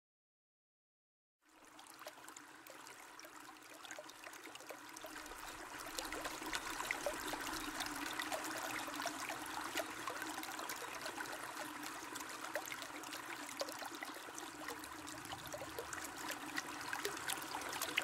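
Running water, trickling like a stream, fading in after about a second and a half of silence and growing louder over the next few seconds before holding steady.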